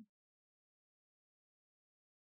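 Near silence: the sound track drops out between phrases of speech.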